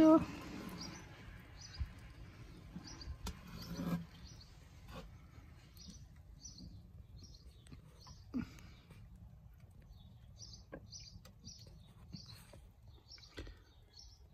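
A small bird chirping in the background: short, high calls repeated several to a second, in runs early on and again in the second half, over a low steady outdoor rumble.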